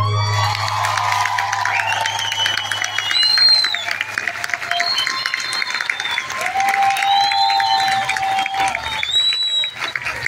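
A bachata song ends on a held low final note, and a theatre audience applauds and cheers, with shouts and whistles over the clapping.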